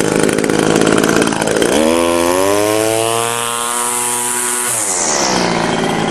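Small two-stroke string trimmer engine idling, then revved up for about three seconds and let fall back to idle. It is running again after its stuck carburetor inlet needle was freed.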